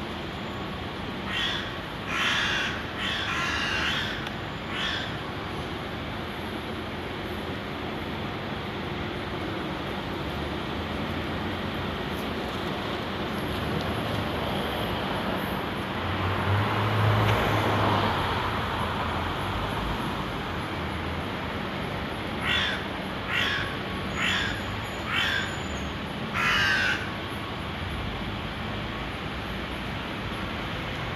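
A crow calling: a run of about five short, harsh calls near the start and another run of about five near the end. Under it runs a steady city background noise that swells briefly in the middle.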